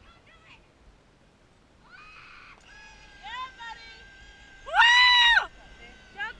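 A person's loud, high-pitched cry about five seconds in, held for under a second and rising then falling in pitch, after quieter sliding calls and voices.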